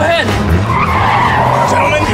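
Car tyres skidding: a loud screech of about a second and a half that starts about half a second in, over a low steady hum.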